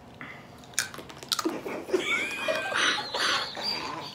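Crisp cracking bites into a brittle stick of 29-year-old trading-card bubble gum, a few sharp cracks about a second in, followed by chewing and muffled laughter through a full mouth.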